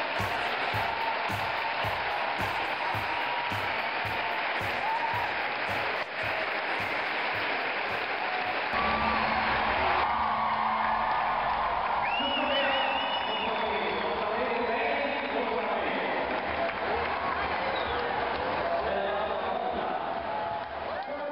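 Large arena crowd clapping and cheering over music with a steady beat of about two and a half thumps a second; after about eight seconds the beat drops away and the crowd noise swells, with a brief trilling whistle a little past the middle.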